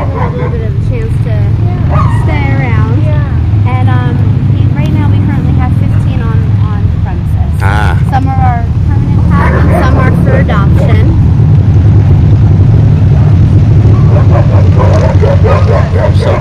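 Wolfdogs whining and yipping in short, wavering high-pitched glides that come and go, over a steady low rumble.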